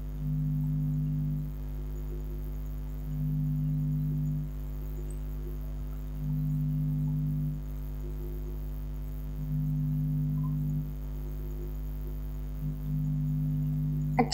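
Low, steady droning background music, swelling in level about every three seconds, over a constant faint low hum.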